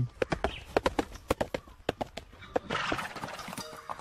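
A horse's hooves clopping: a run of sharp, irregular knocks, the sound of a rider arriving on horseback.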